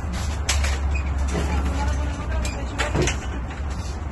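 A large metal frame clanking and knocking several times as it is tipped out of the back of a van, over a steady low rumble.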